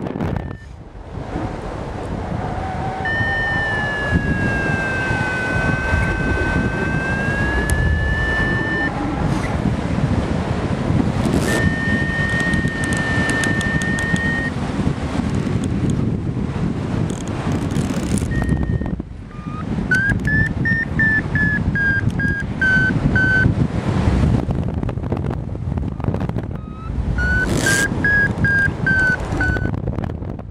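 Air rushing over the microphone in flight, with a paragliding variometer's electronic tone over it, its pitch following vertical speed: a long tone that dips and rises again a few seconds in, a shorter steady tone near the middle, and two runs of quick beeps that rise and then fall in pitch in the second half.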